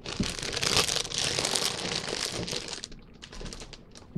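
A plastic potato chip bag crinkling and crackling as it is handled and set aside, dying away about three seconds in.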